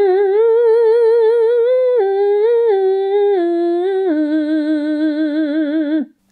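A woman humming a sustained, resonant 'n' sound, with her tongue against the hard palate behind her teeth and her soft palate lifted. It is held with vibrato and steps between a few neighbouring pitches, dropping lower about two seconds in and again about four seconds in, and stops at the end.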